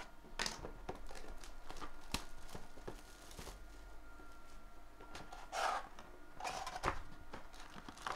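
Hands handling and opening a cardboard 2017 Panini Phoenix football card hobby box: scattered taps and clicks with a few short rustling, scraping sounds of cardboard being pulled open.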